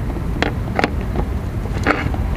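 Handling noise as a GM LT1's Opti-Spark distributor is worked loose and pulled off the front of the engine: about four short, sharp clicks and knocks over a steady low rumble.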